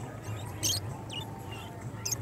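Caged pet birds giving a few short, high-pitched chirps, the clearest about half a second in and a fainter one shortly after, over a low steady background hum.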